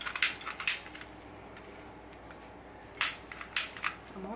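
Handheld butane kitchen torch clicking as its igniter is triggered, failing to light: a quick run of sharp clicks near the start and another about three seconds in.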